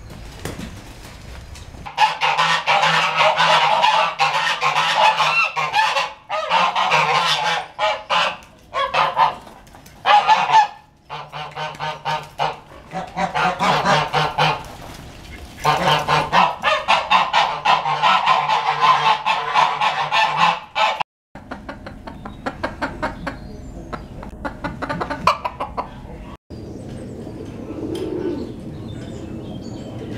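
Domestic geese honking loudly, many rapid calls overlapping, for most of the stretch. After a sudden break about two-thirds of the way in, the calling continues more quietly.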